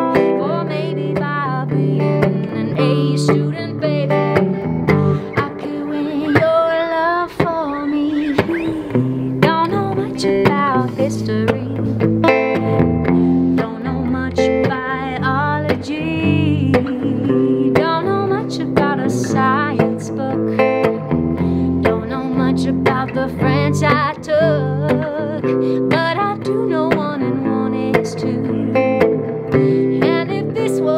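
1956 Silvertone U2 electric guitar played through an amp, accompanying a woman singing a song.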